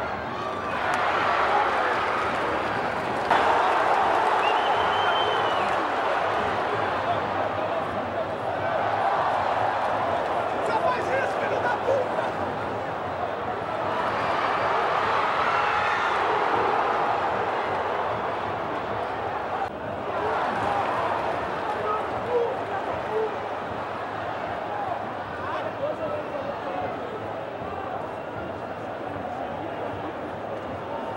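Large football stadium crowd cheering loudly after an equalising goal, a dense mass of voices with clapping, breaking off and resuming abruptly a few times.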